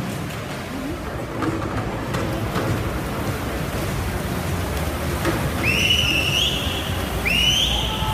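Swimmers splashing through a freestyle sprint in a crowded indoor pool hall, a steady wash of splashing and crowd noise. Near the end come two loud, rising whistles about a second and a half apart.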